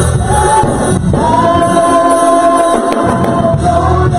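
A woman singing gospel through a microphone over backing music, holding one long note from about a second in until near the end.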